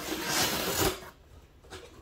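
Packing tape on a cardboard shipping box being slit and torn open: a scratchy rip lasting about a second that ends with a knock, then faint handling of the box.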